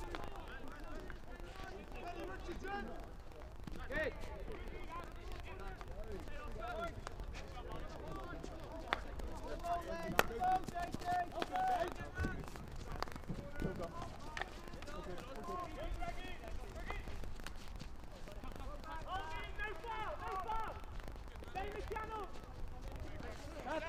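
Field hockey players calling and shouting to each other across an outdoor pitch, in short scattered calls. A few sharp knocks of stick on ball, the loudest a crack about ten seconds in.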